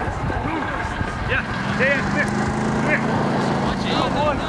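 Distant raised voices calling out in short shouts, with a steady low engine-like hum coming in about one and a half seconds in.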